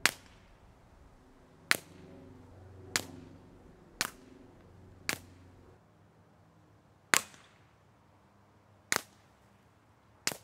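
Seven shots from a TBA Suppressors Sicario 22, an integrally suppressed Ruger Mark IV .22 LR pistol, fired with CCI Mini-Mag ammunition at an uneven pace of roughly one a second. Each shot is a sharp crack with a short fading tail.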